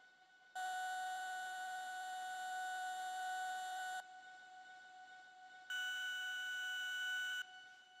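Two steady, beep-like electronic synthesizer tones: one held for about three and a half seconds and cut off abruptly, then after a short pause a second tone an octave higher, held for under two seconds.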